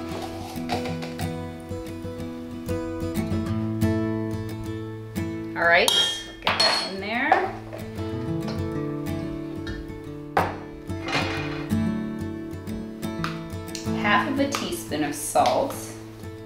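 A spoon clinking and scraping against a stainless steel mixing bowl several times while batter is stirred, over steady background music.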